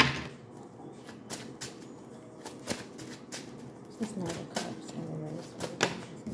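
A tarot deck being shuffled by hand: a quick, irregular run of card snaps and slaps.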